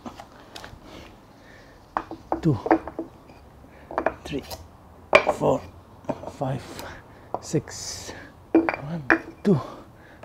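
A very heavy solid hardwood workbench being tipped over by hand: irregular knocks and clunks of wood against the concrete floor, with short strained grunts from the man lifting it.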